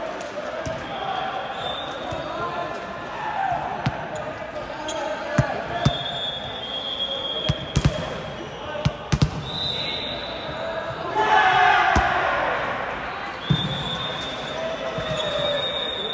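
A volleyball striking a hard sports-hall floor and being hit: a scatter of sharp thumps, some in quick pairs, that echo in the large hall.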